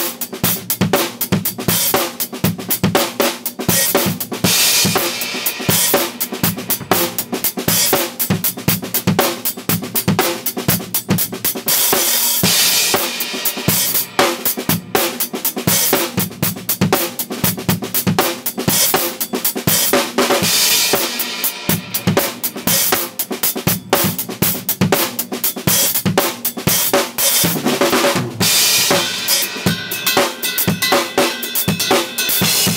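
Acoustic drum kit played solo: fast, dense strokes on snare, toms and bass drum, with cymbal crashes about every eight seconds.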